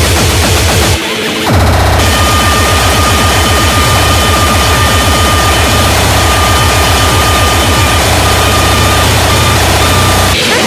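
Loud speedcore/hardcore electronic music: very fast, distorted kick drums under dense noisy synth layers. About a second in, the kicks drop out for half a second, then come back with a held high synth tone over them.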